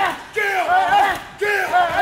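Men's shouted cries, each rising and falling, repeating in a steady rhythm about once a second. These are hype yells during a heavy-bag punching drill.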